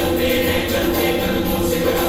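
Hindi patriotic song playing: music with a group of voices singing, steady throughout.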